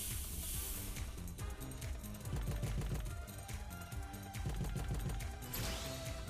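Background music and sound effects of the Pragmatic Play online slot Gold Oasis as its reels spin, with a string of quick clicks over the music.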